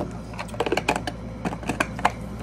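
A plastic vitamin jar being handled and its lid worked open: a sharp click, then a quick irregular run of small plastic clicks and rattles.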